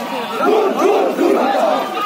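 Crowd of marchers shouting a slogan together, many men's voices at once, swelling loudest through the middle of the shout.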